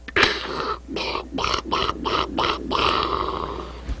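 Breathy, wheezing laughter: quick bursts of out-breath a few times a second, with a longer drawn-out breath near the end.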